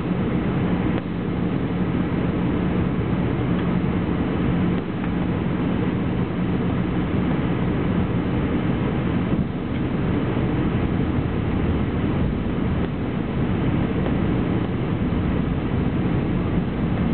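Airbus A321 cabin noise heard from a window seat beside the turbofan engine during descent: steady engine and rushing-air noise with a constant low hum.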